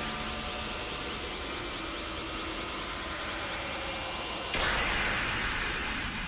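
Anime power-up aura sound effect: a steady rushing hiss, with a louder whoosh about four and a half seconds in.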